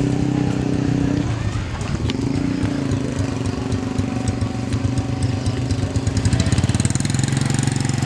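Motorcycle engine running at low speed close by, a steady pulsing note whose pitch shifts slightly about a second and two seconds in.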